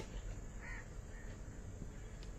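Faint outdoor background with two short calls about half a second apart, crow-like caws, over a low steady hum.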